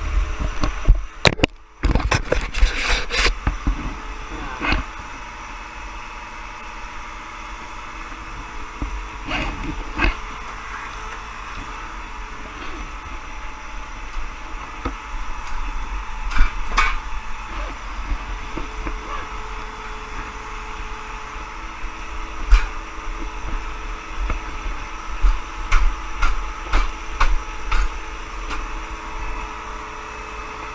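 Metal clanks and knocks from three-point hitch parts being handled and taken off a compact tractor, over a steady mechanical hum. The clanks come thickest in a burst in the first few seconds, with scattered knocks after, one sharp knock about two-thirds through, and another run of clanks near the end.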